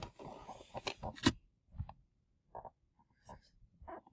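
Faint rustling and a few light clicks and knocks from a handheld camera being handled and moved, the loudest a sharp click about a second in.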